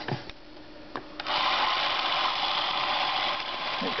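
The spring-wound clockwork motor of a 1959 Bolex Paillard B-8SL 8mm movie camera. After a couple of short clicks, it starts a little over a second in and runs with a steady, even whir. The motor still works and sounds pretty good.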